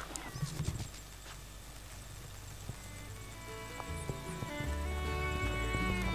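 Background music fading in, with sustained notes over low bass notes, growing louder through the second half. A few soft knocks come in the first second.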